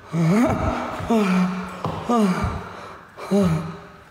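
A person's voice letting out four wordless, drawn-out cries about a second apart, the pitch sliding up and down in each.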